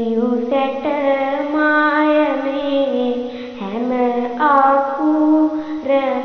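A girl's voice chanting Sinhala kavi verse in the traditional melodic style: long held notes joined by short gliding turns, with a brief breath a little past halfway.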